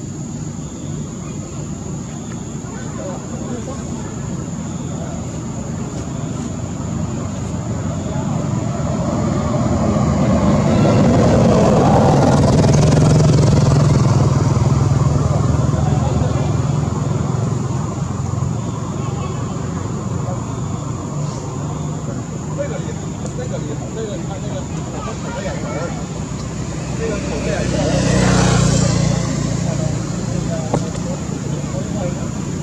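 Motor vehicles passing, swelling to a peak about ten to sixteen seconds in and again briefly near the end, over a steady hum.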